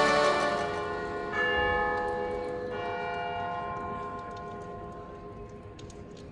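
Church bells ringing: two fresh strikes about a second and a half and just under three seconds in, each followed by a long ringing that slowly dies away.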